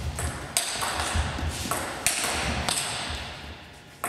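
Table tennis rally: a celluloid-type ball struck by rubber-covered bats and bouncing on the table, a sharp click about every half second.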